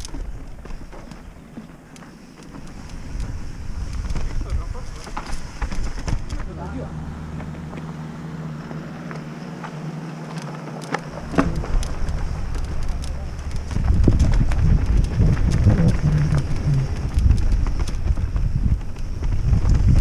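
Mountain bike riding down a rough, rocky trail: tyres on dirt and stones with the bike rattling and knocking over bumps, and wind on the microphone. A steady low hum holds for a few seconds in the middle, and the rattling and rumbling grow heavier and louder for the last six seconds.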